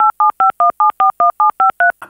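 Touch-tone telephone keypad dialing: a rapid, even run of about ten short dual-tone beeps, roughly five a second, each beep a different pair of notes.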